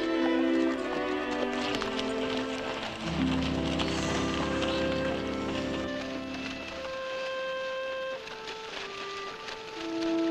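Background score of held musical notes, swelling with a strong low part from about three to seven seconds in, then thinning out. Horses' hooves are faintly heard beneath the music in the first half.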